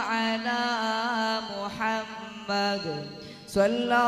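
Islamic devotional chant (salawat) sung in a drawn-out melody, with long held notes and ornamented turns. The voice drops away about three seconds in and comes back in just before the end.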